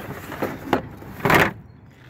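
Kayak gear being handled inside a plastic rooftop cargo box: light knocks and rustling, with one louder rustle a little over a second in.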